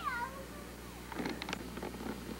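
A short, wavering high-pitched meow right at the start, followed by a few faint clicks and rustles.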